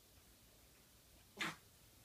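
A puppy makes one short, sharp sound, a single brief burst about one and a half seconds in, over faint room tone.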